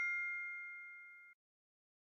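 Fading tail of a two-note chime sound effect marking the correct answer, its ringing tones dying away and cutting off about a second in.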